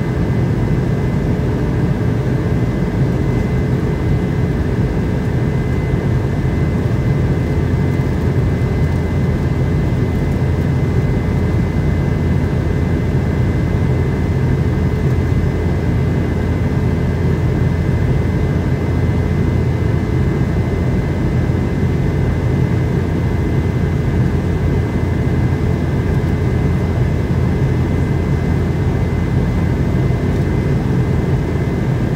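Steady cabin noise of a Boeing 717 in flight, heard from inside the cabin: a constant low rumble from its two rear-mounted Rolls-Royce BR715 turbofans and the airflow, with a faint steady hum on top.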